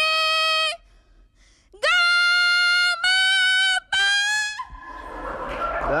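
A young woman singing long held sargam notes with no accompaniment, high in her range, each note a step above the last as she is pushed up the scale in a vocal range test. Applause starts near the end.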